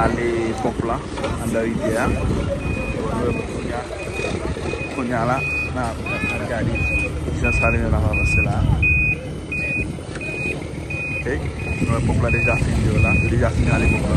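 A truck's reversing alarm beeping steadily at about one and a half beeps a second, starting about two seconds in, over the low rumble of a running truck engine.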